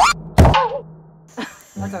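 Comic editing sound effect: a quick rising squeal, then a single heavy thunk about half a second in. After a pause, a woman laughs and speaks near the end.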